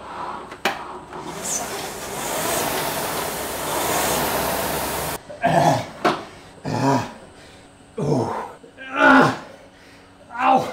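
An air-braked Concept2 rowing machine's flywheel fan rushes steadily and swells with each stroke, then cuts off abruptly about five seconds in. After that a man groans and gasps for breath about once a second, each groan falling in pitch: the exhaustion of someone who has just finished an all-out 2 km row.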